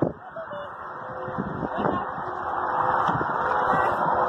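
Steady rushing outdoor noise, like wind on the microphone or a moving vehicle, growing louder over the seconds, with a click at the start and a few faint short high-pitched sounds about half a second in.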